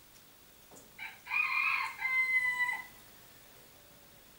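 A rooster crowing once, about a second in: a call of just under two seconds that ends on a held note.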